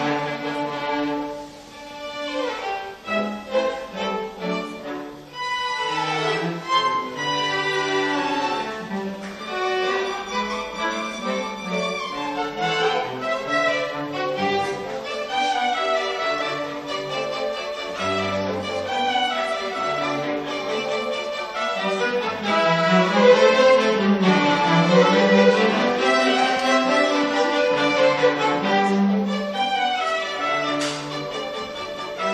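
A small string ensemble of violins and cellos playing a classical piece live, bowed melody lines over a cello bass. It goes briefly softer about two seconds in, then builds to its loudest passage in the second half.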